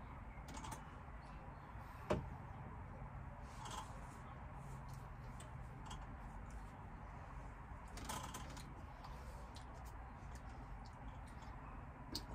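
A glass set down on a wooden table: one sharp knock about two seconds in, over a steady low hum, with a few fainter clicks around it.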